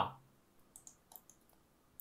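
Several faint, irregularly spaced clicks of a computer mouse.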